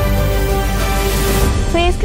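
Background music with sustained steady notes, swelling with a rising hiss in the middle. A girl's voice starts in near the end.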